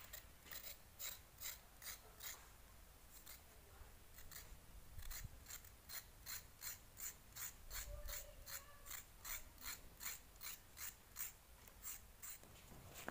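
Knife blade scraping the skin off a carrot in quick, faint, evenly repeated strokes, about three a second, with a short pause about three seconds in.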